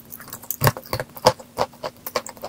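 A piece of wet chalk being chewed, making a quick series of sharp, crisp crunches; the loudest comes about two-thirds of a second in.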